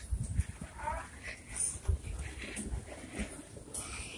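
Footsteps and handling noise from a camera carried at a brisk walk: irregular low thumps, with a short faint voice-like sound about a second in.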